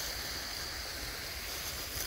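Small woodland creek running over rocks: a steady, even rush of water.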